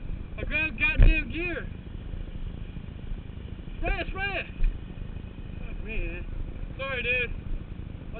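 Muffled voices in three short bursts over a steady low rumble from a stopped motorcycle's engine idling, with a thump about a second in.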